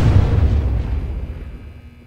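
A deep trailer boom hitting at the top of a rising swell of music, its low rumble and ringing tones dying away over about two seconds.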